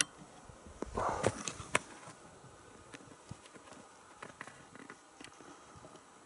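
Faint scattered clicks, with a brief rustle about a second in: handling noise from the hand-held camera and flashlight.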